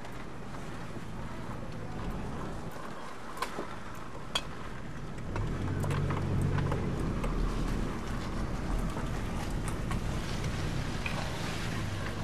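Vehicle engine and road noise heard from inside the cab while driving slowly, with a low engine hum that grows louder about five seconds in. A few light clicks sound over it.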